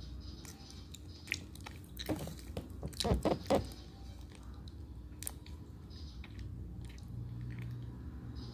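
Wet sucking and chewing sounds of a person eating jelly squeezed from a torn-open drink pouch, with scattered clicks and a short run of louder smacks about two to three and a half seconds in.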